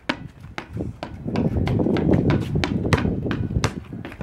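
Rapid, irregular light knocks on pavement, about four a second, over a low rumble that swells in the middle.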